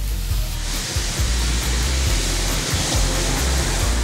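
Large gas-fired wok flame flaring up around frying eel, giving a steady rushing hiss that swells about a second in, with background music underneath.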